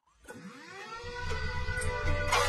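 A brief moment of silence, then an outro jingle fades in: several tones glide downward and settle into a steady held chord that grows louder.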